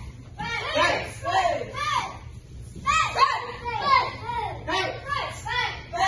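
Several children shouting over one another, short high shouts that rise and fall in pitch, one after another, in a large hall.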